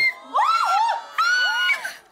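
Young women's voices shrieking very high notes in a high-note contest: several high squeals that glide up and down and overlap, with two short breaks.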